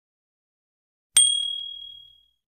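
A notification-bell sound effect for a subscribe button's bell icon being switched on: a single bright ding about a second in, ringing out and fading.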